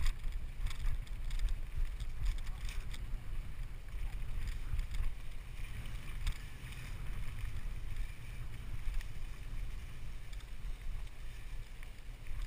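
Wind buffeting the microphone of a GoPro on a mountain bike rolling down a rough singletrack, a steady low rumble, with irregular clicks and rattles from the bike over the bumpy ground.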